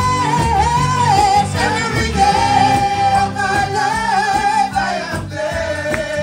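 A woman singing a gospel song into a microphone over instrumental backing, holding long, slightly wavering notes.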